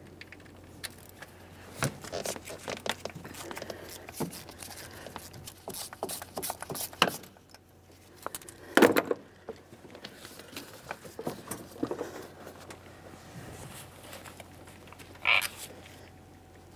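Hand ratchet with a 10 mm socket clicking as it backs out a purge solenoid mounting bolt, with irregular clicks and light metal clinks, and a louder clank about nine seconds in.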